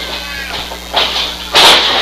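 A wrestling dropkick landing: a sharp, loud smack about one and a half seconds in as the wrestlers hit the ring canvas, with a smaller knock about a second in. Underneath runs a steady electrical hum from a shorted audio cable, along with crowd chatter.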